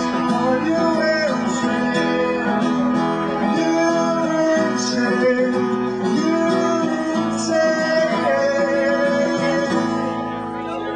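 Live music: a strummed acoustic guitar with other accompanying instruments, carrying sustained melodic notes that bend in pitch.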